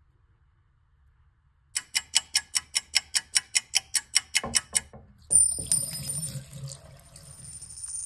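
A quick, regular run of about twenty sharp ringing ticks, some seven a second, lasting about three seconds. Then, about five seconds in, the bathroom sink tap comes on suddenly and water runs into the basin, with thin high steady tones over the rush.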